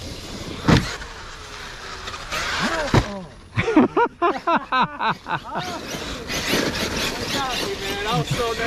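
Large 8S electric RC monster truck running on grass, its motor whining in quick rising-and-falling sweeps as the throttle is blipped over and over in the middle. Two sharp thumps come earlier.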